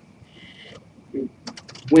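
A few light clicks in a quiet room during a pause in talk, just before a man's voice resumes.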